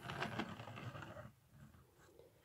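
Faint handling noise of plastic Lego pieces, a soft scratchy rustle with small ticks, as the building is turned around on its baseplate. It lasts about a second and a half and then stops.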